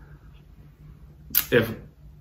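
A pause in a man's speech with faint room tone, then a short sharp breath and the single spoken word "If" near the end.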